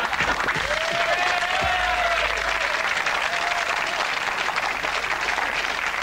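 Studio audience applauding steadily, with a long cheer or whoop over the clapping in the first half.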